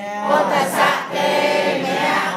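A group of voices chanting Buddhist verses in Pali in unison, with one steady low note held beneath the changing syllables.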